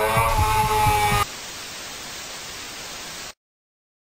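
Television-style static hiss. For about the first second it sits under a louder engine-and-music soundtrack that then cuts off abruptly, leaving the steady hiss, which stops suddenly a little over three seconds in.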